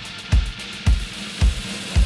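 Drum kit playing a steady beat, with a punchy bass-drum and snare hit roughly twice a second over a held low backing tone.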